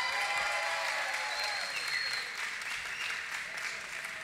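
Audience applauding, easing off near the end.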